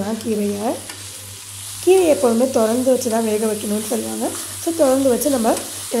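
A wooden spatula stirring and tossing leafy greens in a stainless steel pan, each stroke scraping the metal with a squeaky, pitched tone. The strokes pause for about a second soon after the start, then go on in a quick run of several strokes a second.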